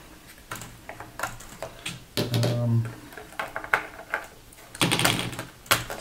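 Light clicks and taps of a small Phillips screwdriver and fingers on the plastic underside of a Dell Latitude D620 as the memory-cover screw is backed out and the cover is worked loose. A short scraping rustle comes near the end.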